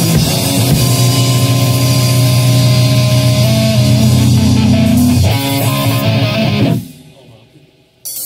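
Rock band rehearsing a heavy song on distorted electric guitar and drum kit: a long held low chord rings over cymbal wash, a few more chords follow, then the playing stops abruptly about seven seconds in and the sound dies away.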